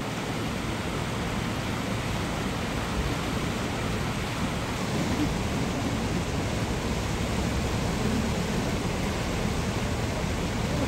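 A swollen river in flood rushing past in a brown torrent: a steady, even noise of fast-moving water with no let-up.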